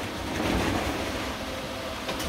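Steady rushing background noise with no speech, swelling slightly about half a second in.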